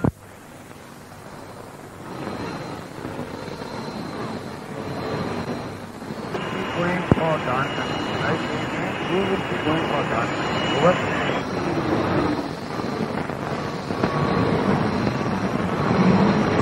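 Military field-radio channel between messages: hiss and static with a faint, garbled voice underneath. A steady high whistle comes in about six seconds in and drops out about five seconds later, and there is a single sharp click in the middle.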